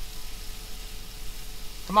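Steady hiss and low hum inside the cab of an idling pickup truck, with a faint steady tone above them.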